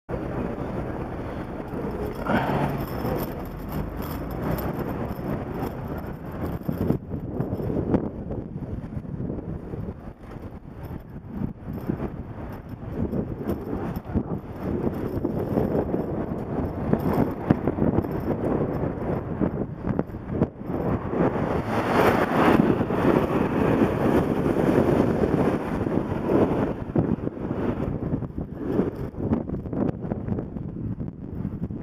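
A car driving through town: steady engine and road noise, swelling and easing as it moves off and picks up speed, with wind buffeting the microphone.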